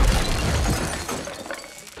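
A crash from a film clip's soundtrack, loudest at the start and dying away over about a second and a half.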